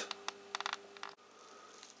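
Faint handling noise: a few light clicks in the first second as a plastic orchid pot is held and moved, then low room tone.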